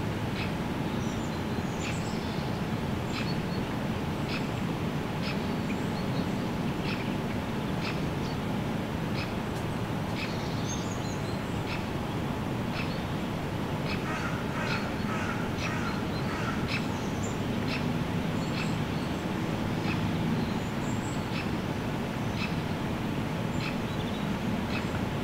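Outdoor ambience of birds calling and chirping over a steady low rumble, with a busier cluster of calls a little past the middle. Sharp ticks recur about once a second.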